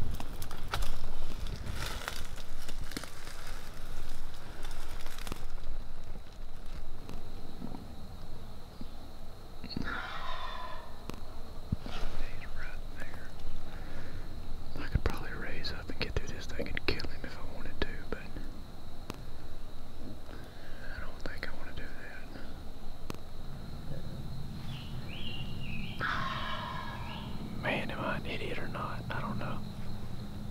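A wild turkey gobbler gobbling twice, about ten seconds in and again near the end, each gobble a rapid warbling rattle of about a second. There is close rustling in the first few seconds.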